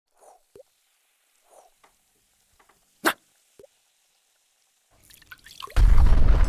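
Animated sound effects of liquid drips and plops, a few spaced out with a sharper click about three seconds in, then a rising fizz that builds into a loud explosion near the end.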